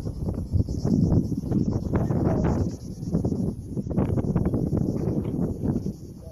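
Wind buffeting a phone's microphone outdoors, a loud irregular low rumble, with scattered clicks and knocks of handling or footsteps throughout.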